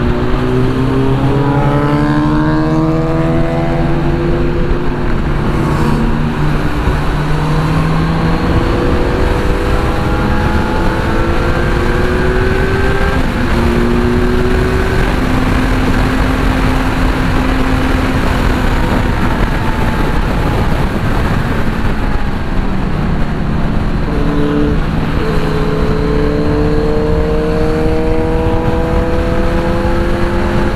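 Kawasaki Z900 inline-four engine heard from the rider's seat while riding at highway speed, with steady wind rush over it. The engine pulls with a rising pitch for the first several seconds, eases into a steadier cruise, then picks up and climbs in pitch again in the last few seconds.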